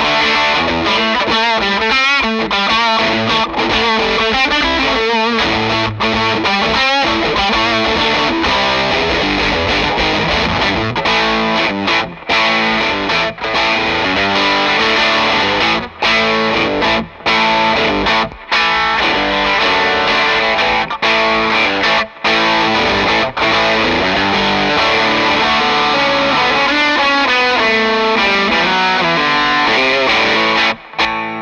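Electric guitar played through an Electronic Audio Experiments Dagger distortion pedal: loud distorted chords and riffs, with short stops between phrases in the middle stretch.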